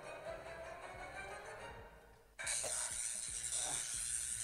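A homemade Arduino shock-roulette game's speaker plays a pitched tone that slowly rises during the waiting countdown, then fades out about two seconds in. A sudden, louder harsh hiss breaks in about halfway through, as the round ends and one player is picked for the shock.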